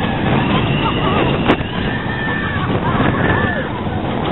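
Suspended roller coaster train running through the dark: a steady, loud rush of wind and track noise, with high wails gliding up and down over it and one sharp click about a second and a half in.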